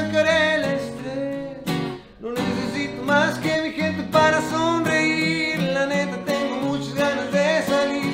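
A man singing in Spanish to his own strummed acoustic guitar, with a short break in the sound about two seconds in.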